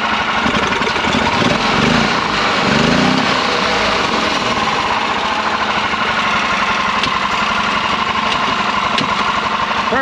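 Predator 420 single-cylinder engine running with the cart in forward gear, its throttle worked by hand at the carburetor linkage; it speeds up briefly twice in the first few seconds, then runs steadily.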